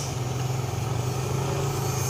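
Motorcycle engine running at a steady low hum while creeping in slow, jammed traffic.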